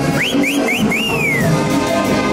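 Dance band music with horns playing. Over it, a person whistles three short rising whistles, then a longer one that rises and slowly falls.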